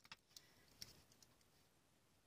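Near silence, with a few faint, short clicks of steel pliers and copper wire being handled.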